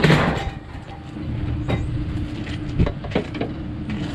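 Crowbar prying at a refrigerator door hinge. A sharp, loud crack comes right at the start, then a few lighter knocks and clicks of the bar on the hinge, over a steady low hum.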